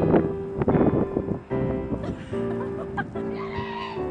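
Slow piano music with held notes, with a loud, noisy, unpitched sound over it in the first second and a brief wavering sound near the end.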